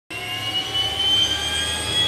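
Small Cessna business jet's rear-mounted turbofan engines running at low power, a steady high whine that creeps slowly up in pitch over a low rumble.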